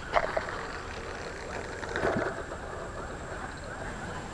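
Steady low rush of a flowing river, with a couple of light knocks from the fishing rod being handled, one at the start and one about two seconds in.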